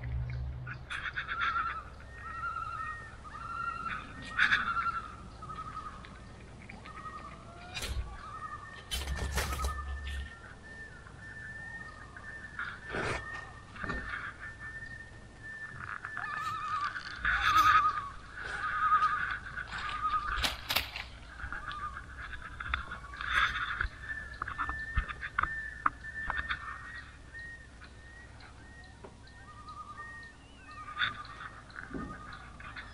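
An animal calling over and over in short, pitched notes, a few a second, with scattered sharp clicks between them.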